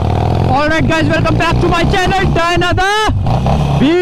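Harley-Davidson Forty-Eight Sportster's air-cooled V-twin running steadily while the bike cruises, a low, even rumble under a talking voice.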